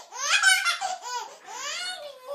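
A baby laughing in several high-pitched, squealing peals.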